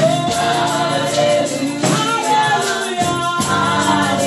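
A woman singing a gospel song into a microphone while shaking a tambourine, its jingles marking a steady beat over lower accompanying notes.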